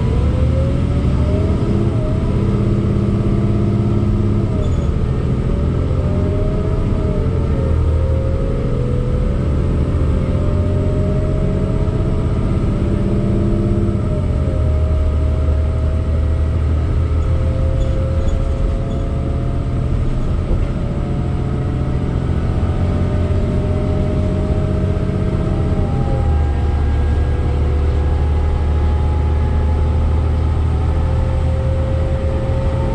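Cummins ISL diesel engine and Allison B400R automatic transmission of a 2008 New Flyer D40LFR transit bus accelerating up to highway speed, heard inside the bus over a steady low rumble. The pitch climbs and drops back at each upshift, several times, with the gaps between shifts lengthening as speed builds.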